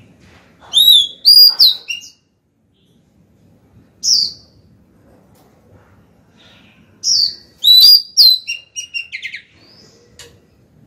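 Female oriental magpie-robin singing to call a male: a loud phrase of clear whistled notes about a second in, a single note around four seconds, then a longer phrase from about seven seconds that ends in a quick run of short notes.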